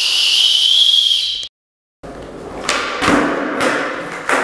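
One long blast on a plastic whistle, cutting off about a second and a half in. After a short silence, skateboard wheels rolling over a concrete floor, with several sharp knocks.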